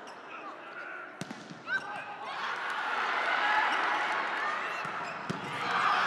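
Indoor volleyball rally: a few sharp hits of the ball, then the gym crowd's shouting and cheering swells from about two seconds in and grows louder near the end.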